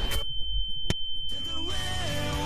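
A steady high-pitched electronic tone, like a sine-wave beep, sounding over a low rumble, with a single sharp click about a second in. Music comes back in under the tone during the second half.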